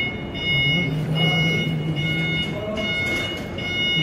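A man singing a devotional Urdu song, holding one long note through the middle, over a high electronic tone that breaks off and returns about twice a second.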